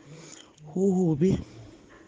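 A person's voice: one short, drawn-out vocal sound, held for about half a second a little under a second in.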